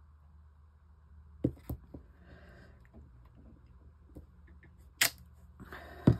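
Clear acrylic stamping block being pressed onto card and handled, giving a few light clicks about a second and a half in and one sharper click near the end, over a faint low hum.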